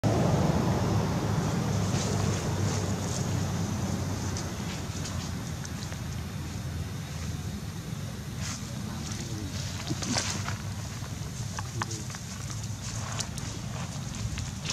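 Wind rumbling on the microphone outdoors, heaviest in the first few seconds and then easing, with scattered light clicks and rustles through the second half.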